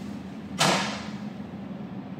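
Toilet lid being lifted and knocking back against the tank once, a single sharp knock about half a second in.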